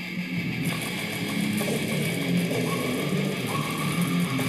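Electric guitar playing fast, technical death metal riffs along with the song's recording played through laptop speakers. The mix turns brighter and denser about half a second in.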